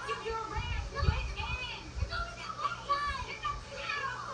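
Sitcom dialogue from a television, heard through the TV's speaker: a woman's voice and children's voices, some of them high-pitched and shouting.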